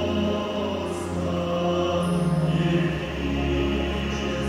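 Live orchestra of strings and folk instruments playing slow music with long held notes, heard in a concert hall.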